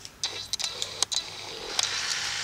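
Plastic-bristled detangling brush dragged through a knotted section of Afro hair: a run of sharp, scratchy strokes, then a steadier brushing hiss near the end as the knot is worked free.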